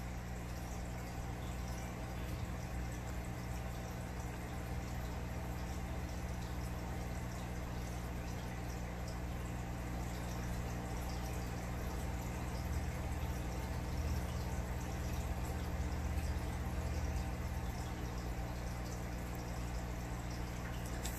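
Aquarium water bubbling and trickling steadily, over a low steady hum.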